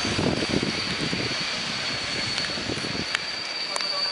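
Passenger train's coaches rolling slowly along the rails, a steady rumble with a thin high-pitched squeal from the wheels held throughout and a few sharp clicks over the rail joints in the second half.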